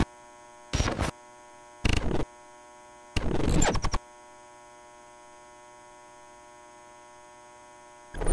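Logo-card sound design: a steady electrical hum, with three short bursts of noise about a second apart, the last one longer, over the first four seconds, then the hum alone.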